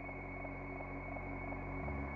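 Slow ambient electronic music from synthesizers: layered sustained drone tones with a soft pulse about three times a second, and a deeper bass tone that swells in near the end.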